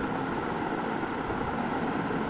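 Steady low background noise with no distinct events.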